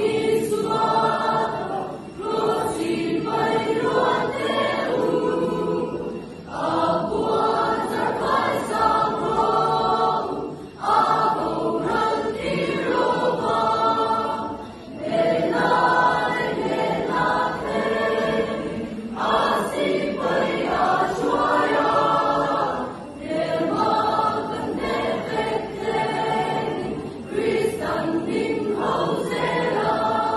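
A large youth choir of mixed voices singing together, in phrases of about four seconds with brief breaks between them.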